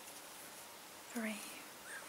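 Faint, even room hiss, with a woman softly saying "three" about a second in while counting chain stitches.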